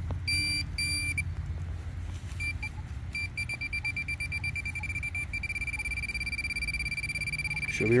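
Electronic beeping from metal-detecting gear: two short high beeps, then a handheld pinpointer beeping faster and faster until it holds one steady tone as it closes in on a buried target, which the detectorist took for a coin.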